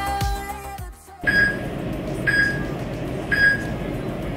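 Background pop music that stops about a second in, then three short, identical electronic beeps a second apart over a steady hiss: an interval timer counting down the last seconds of the exercise.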